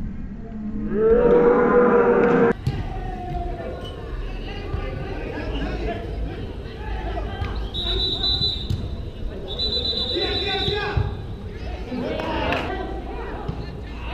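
Soccer players shouting: a loud, drawn-out yell as a shot goes in on the goal, cut off suddenly, followed by scattered calls between players and two short, high whistle blasts near the middle.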